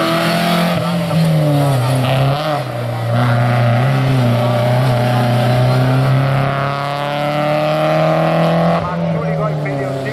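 Volkswagen Polo hillclimb race car driving hard out of a hairpin, its engine revving and changing pitch through the corner, then climbing steadily under full acceleration before dropping sharply at a gear change near the end.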